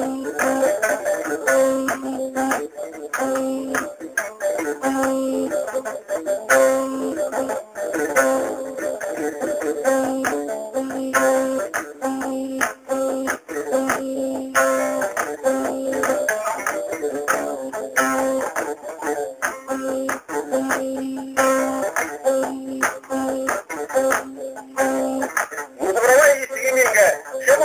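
Music on a plucked string instrument, with one low note repeated over and over beneath a busier melody higher up.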